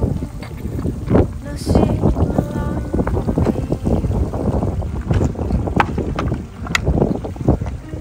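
Wind buffeting the microphone over a shallow stream running among rocks, with many short knocks and crunches of footsteps on the stream-bed stones.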